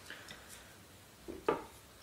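A tripod shooting rest being handled and shifted on a table: a few faint rubs and knocks, then one sharper click about three-quarters of the way through.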